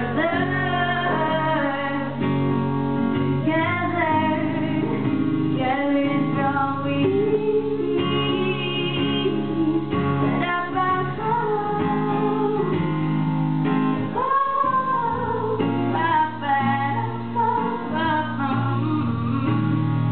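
A woman singing live to her own acoustic guitar accompaniment, a sung melody over steady guitar chords.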